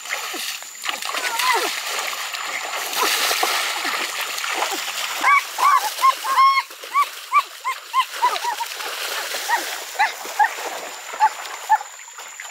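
Shallow stream water splashing and churning as men struggle with a large python in it. From about five seconds in, a rapid run of short, high yelping cries comes about three times a second.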